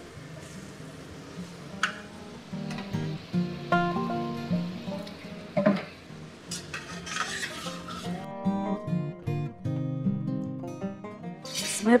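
Background music, over a metal spatula stirring vegetables sizzling in an iron kadai, with a few sharp scrapes against the pan. A louder sizzle comes around six to eight seconds as water goes into the hot masala, and after that the music is mostly what is heard.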